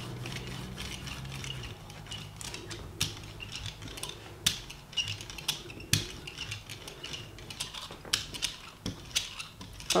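A brayer rolling back and forth through wet acrylic paint on a gel printing plate, spreading the drops into a thin layer, with irregular clicks and ticks as it goes.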